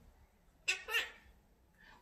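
A quaker parrot gives a short two-part call less than a second in.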